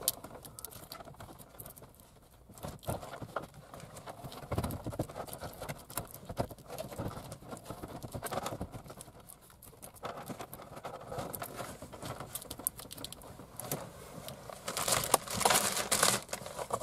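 A Pioneer AVH-W4500NEX double-DIN head unit and its wiring being pushed into a Metra 95-6554B dash kit: irregular plastic knocks, scrapes and rustling of cables, with a louder run of knocks near the end. The radio is hanging up on something as it goes in, a tight fit behind the dash.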